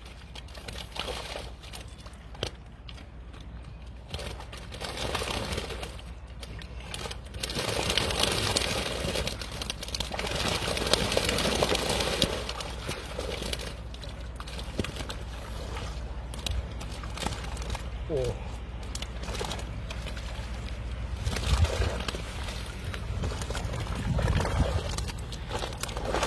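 River water sloshing and splashing around a wading angler's legs and a large fish he is holding. The noise swells and fades over the span, with faint indistinct voices at times.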